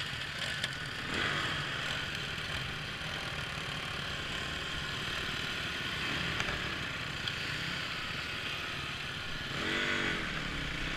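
Honda dirt bike engines running as a group of trail bikes rides off over gravel, with crunching from the stones. Near the end one engine revs up with a rising pitch.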